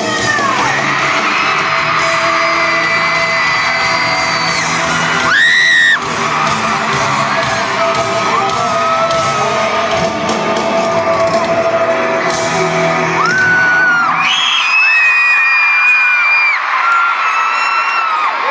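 Live band music heard through an arena's PA from among the audience, with fans screaming over it; one loud scream rises close to the microphone about five seconds in. Near the end the music stops and the crowd keeps screaming and cheering.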